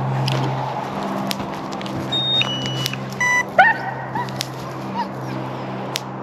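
A few short electronic beeps at different pitches about two to three seconds in, then a Great Pyrenees gives a couple of short yelps, over a steady low hum.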